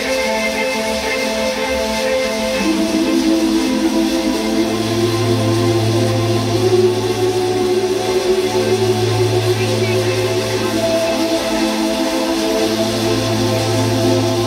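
Music with long held synth-like chords; a deep sustained bass note comes in about four and a half seconds in and breaks off briefly twice.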